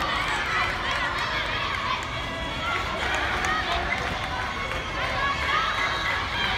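Many girls' voices calling and shouting at once, overlapping continuously, with players' shoes moving on the hard court.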